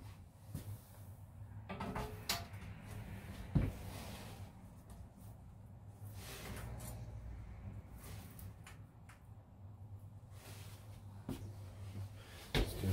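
Thin glass sheets being handled and set down on a paper-covered kiln shelf: scattered light clicks and taps, the sharpest a few seconds in, over a steady low hum.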